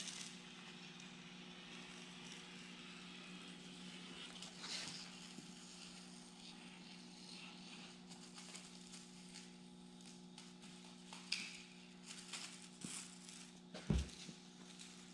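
Thin automotive masking plastic rustling and crinkling faintly as it is cut with a razor blade along masking tape and pulled back from a car window, with a few louder crinkles near the end. A steady low electrical hum runs underneath.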